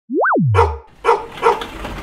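Intro sound effect: a single tone slides quickly up and then drops low, followed by three dog barks about half a second apart.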